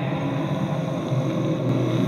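Steady low rumbling drone, a dark ambient sound bed with no clear beat or melody.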